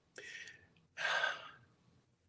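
A man breathing: a faint short breath near the start, then a louder audible breath about a second in, lasting about half a second.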